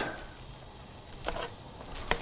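Metal spoon scooping soft dumpling filling out of a plastic food processor bowl: faint squishy scraping with a couple of light taps, one a little over a second in and one near the end.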